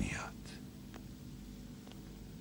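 A man's spoken line ends briefly at the start, then a faint steady low hum continues with a few soft ticks.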